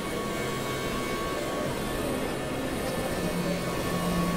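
Experimental electronic noise drone from synthesizers: a dense, steady wash of rumbling noise with held tones layered in, a low tone coming in about three seconds in.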